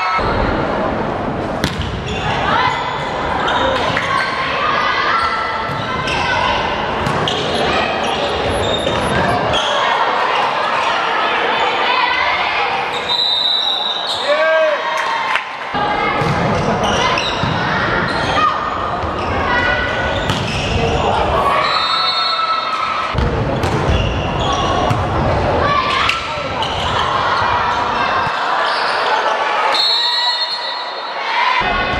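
Volleyball match in a large sports hall: players and supporters shouting and cheering, with the ball striking hands and floor. Everything echoes around the hall.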